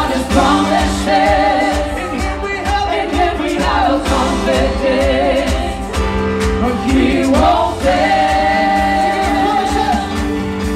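A live gospel worship band: several women singing together into microphones over a drum kit and electric keyboards, with long held notes near the end.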